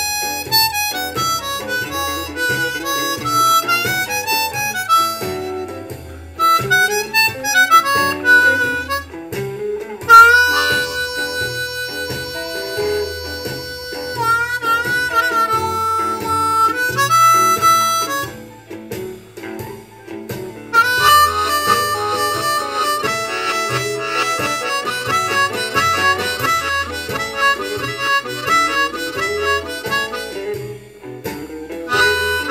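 Ten-hole diatonic harmonica in A improvising bending blues phrases on holes four through seven over a medium shuffle backing track in E, with a steady low beat underneath. About ten seconds in, the harp holds one long note for several seconds before returning to short phrases.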